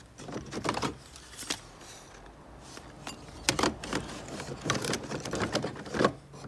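A hand rummaging through a cardboard box of old bric-a-brac, with small wooden and metal objects knocking and clinking against each other in irregular short clatters. The sharpest knocks come about three and a half seconds in and again near the end.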